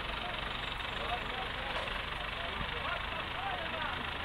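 A crane's engine running steadily, with several people's voices talking and calling out over it.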